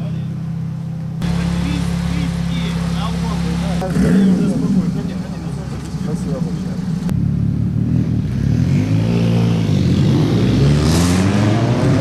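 Turbocharged race car engine idling steadily, then from about seven seconds in revving up and down.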